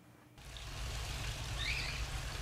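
Steady trickle of water from a small garden pond fountain, starting about half a second in over a low hum.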